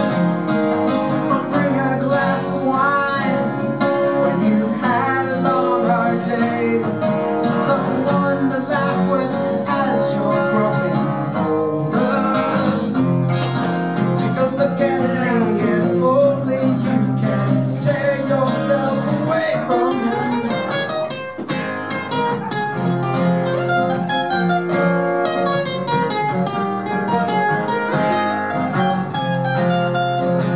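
Two acoustic guitars playing together in an instrumental passage, with quick picked notes growing denser after about twenty seconds.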